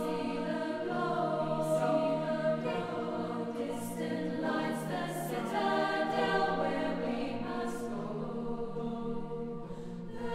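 Choir singing sustained, shifting chords, with soft sibilant consonants now and then.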